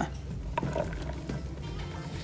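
Background music playing quietly.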